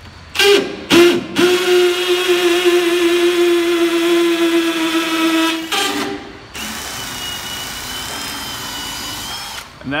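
Cordless drill turning a 24-inch auger bit as it bores a hole: two short trigger blips, then the motor runs under load with a steady whine for about four seconds. After a brief burst it carries on at a lower, steadier whir until just before the end.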